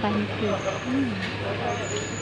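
People's voices chattering among market stalls, with short bits of talk near the start and around the middle, over a steady low hum.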